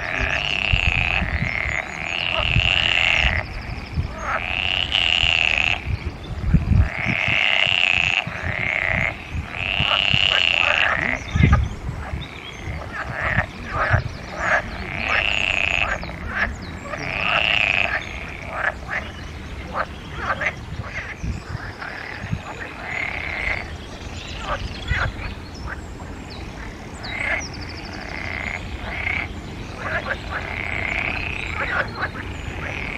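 European water frog (green frog) calling with its vocal sacs puffed out: a series of loud croaking calls, each about a second long, with quicker runs of short croaks in between.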